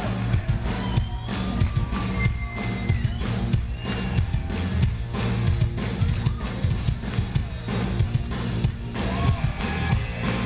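A punk rock band playing live at full volume: a steady, driving drum beat with electric guitars and bass, heavy in the low end, heard from within the audience.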